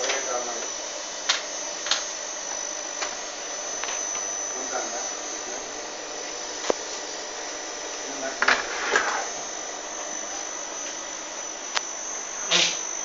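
Steady high-pitched electronic whine from a powered-up Fanuc servo amplifier on the test bench, with a few sharp clicks scattered through.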